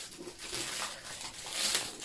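Small clear plastic bags of square diamond-painting drills crinkling and rustling as they are handled, a little louder near the end.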